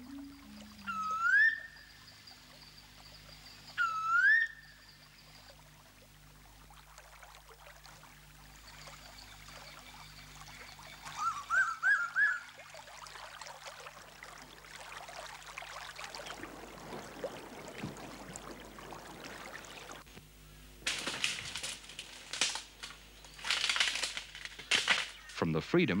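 Bird calls: two rising whistles a few seconds apart near the start and a quick run of short rising notes in the middle, over a faint low steady drone. Near the end come loud bursts of rustling noise.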